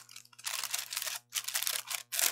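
Fast-food paper bag and wrapper rustling and crinkling as they are handled, with a brief break a little past halfway.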